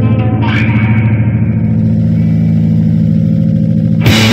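Live rock band's distorted electric guitar and bass holding droning low notes through effects, with no drums playing. A short rising effects sweep comes about half a second in.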